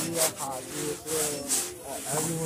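A few short rubbing, scraping bursts of handling noise on a handheld phone's microphone, over indistinct voices.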